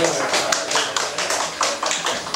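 Scattered hand clapping from a small group: sharp, irregular claps, several a second.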